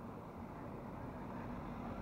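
A motor vehicle on the mountain road, a steady engine hum over road noise, growing slightly louder.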